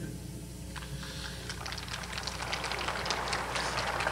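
A quiet pause in a lecture hall: a steady low hum with faint scattered rustles and clicks that grow busier in the second half.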